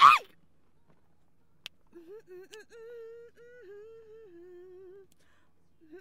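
A person humming a melody in held notes that step up and down in pitch, starting about two seconds in after a loud shout of "Hey!" and a single click.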